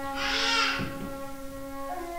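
Flute holding a low, sustained note, with a breathy rush of air about half a second in.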